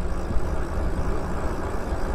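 Steady wind rumble on the microphone with tyre noise from an e-bike rolling along asphalt.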